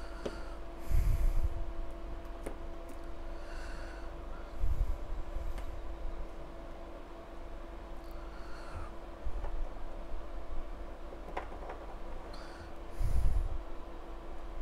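A person breathing out hard through the nose three times, close to the microphone, with softer breaths in between. Small clicks from test-lead clips being handled are heard against a steady electrical hum.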